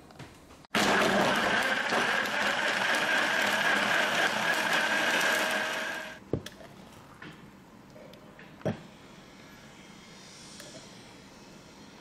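Countertop blender running at full speed, blending frozen banana, yam, nuts and milk into a smoothie; it starts abruptly about a second in and winds down about six seconds in. Later come two short knocks.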